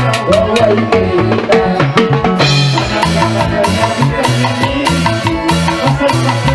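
Live band music played through a PA: a fast, steady drum beat of about four strokes a second with bass and melodic lines over it.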